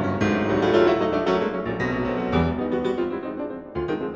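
Solo concert grand piano played live, with dense, loud chords and rapid note attacks, easing briefly near the end before resuming.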